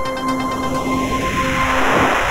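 Closing theme of a TV news bulletin ending: the beat stops and held synth notes ring on for about a second, while a swelling whoosh builds and sweeps down and back up in pitch.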